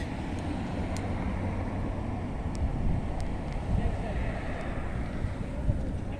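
Steady outdoor background noise: low wind rumble on the microphone with a faint murmur of distant voices and traffic.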